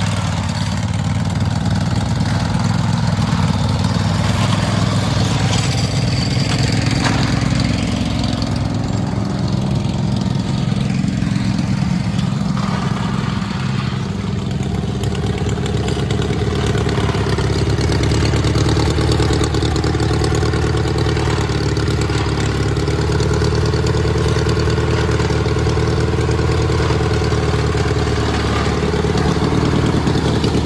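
Lawn tractor engines running hard as the off-road mower climbs a muddy slope. The note shifts in pitch about halfway through, then holds steady.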